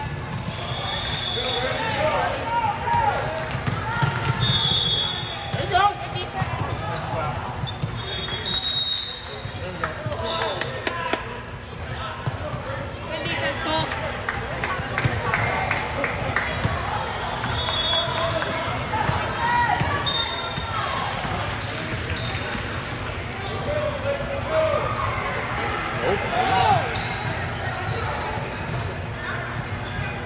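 Basketball game sounds in a large gym: the ball bouncing on the hardwood court, brief high squeaks now and then, and the unintelligible voices of players and spectators throughout.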